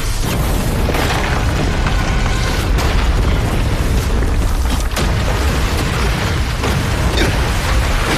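Sound-effect explosions and deep booming impacts from an animated battle, running loud and dense throughout, with a music score underneath.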